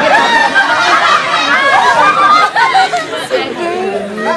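Several people talking at once, voices overlapping.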